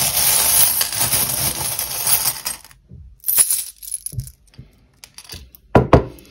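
Small metal charms jingling and clattering as hands stir through a glass bowl full of them: a dense rattle for the first two and a half seconds, then a few scattered clinks as a handful is lifted out.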